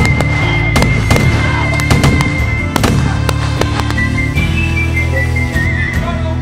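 Several revolver shots fired with blanks in a staged gunfight, sharp cracks spread over the first four seconds, heard over background music carrying a whistled western-style melody.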